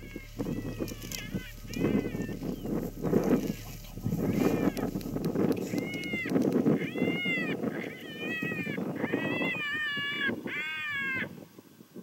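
Icotec electronic predator caller playing a jackrabbit distress sound: a run of high, rising-and-falling cries over raspy noise, coming about once a second toward the end and stopping about eleven seconds in.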